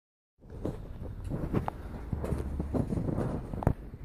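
Irregular knocks, clicks and rustling of handling noise as the recording phone is moved about, with a low rumble partway through and a sharper knock near the end.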